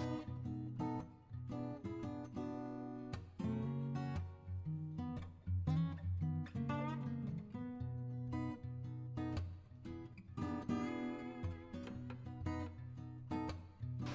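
Background music: an acoustic guitar playing a run of picked notes and chords.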